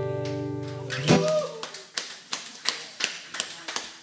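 Final strummed acoustic guitar chord ringing and fading out over about a second, followed by a short voice sound and then sparse, irregular clapping from a small audience.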